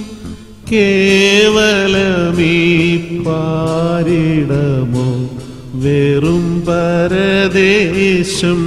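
Slow vocal song, a voice holding long wavering notes. The singing dips briefly at the start and softens again about five seconds in.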